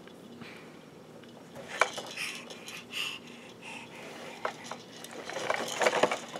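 A few sharp plastic clicks and knocks from a VTech Learning Walker baby push toy as a baby grips and pushes it, the loudest about two seconds in.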